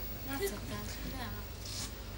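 Faint chatter and murmuring from a group of teenagers, with a short hiss near the end.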